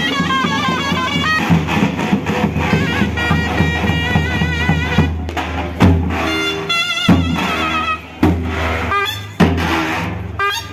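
Davul bass drums beaten in a dance rhythm under a high, ornamented wind-instrument melody: live davul-and-reed folk music. Several heavy drum strokes stand out in the second half.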